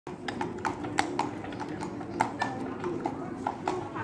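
Horse's hooves clip-clopping on a tarmac road as it pulls a two-wheeled cart past, about four or five sharp strikes a second.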